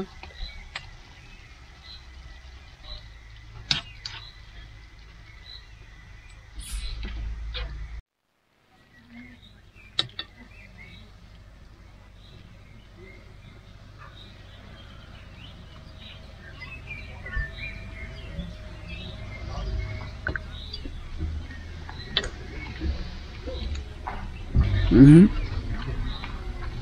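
Utensils clicking and clinking against a saucepan as sticky spaghetti is lifted into a pan of cream sauce. After a cut comes outdoor quiet with birds chirping faintly, a low rumble that slowly grows, the occasional clink of cutlery on a plate, and a short voiced sound near the end.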